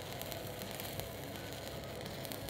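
Stick-welding (shielded metal arc) electrode arc crackling steadily on a steel pipeline joint. A quick strip is being run to fill a concave spot in the filler pass before the cap.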